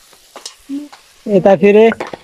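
Faint sizzle of food frying in a pan, then a person's voice calling out loudly over it in the second half.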